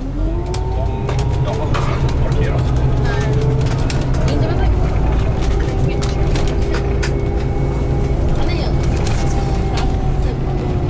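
Coach engine and road noise heard inside the passenger cabin: a steady low rumble with a whine that rises in pitch in the first second and then holds level as the bus picks up speed and cruises.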